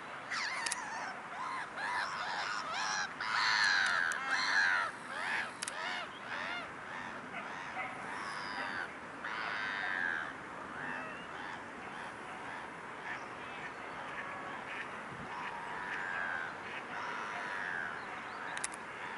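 A flock of waterbirds calling: a busy run of short, harsh calls a few seconds in, thinning to scattered calls later.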